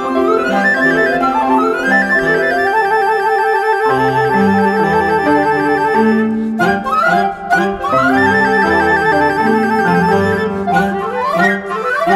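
A contemporary chamber ensemble of woodwinds and piano playing. Rapidly repeated notes pulse over held tones, and low notes enter about four seconds in.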